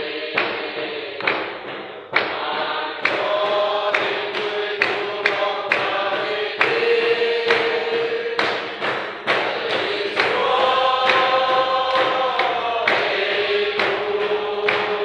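A congregation singing a hymn together, holding long notes, with hand-clapping on a steady beat about twice a second.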